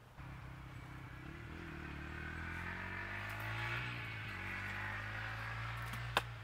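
An engine running steadily, its pitch drifting slightly up and down.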